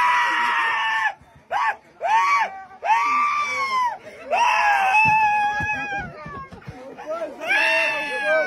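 A person screaming in high-pitched shrieks, several in a row: one long held scream, a few short rising-and-falling cries, then another long scream, with a new one starting near the end. It is the sound of a fright during a virtual-reality ride on a walking-simulator rig.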